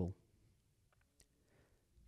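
A spoken word trails off at the very start, followed by near silence with a couple of faint clicks.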